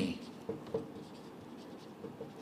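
Marker writing on a whiteboard: a few faint short strokes and taps near the start, over low room hiss.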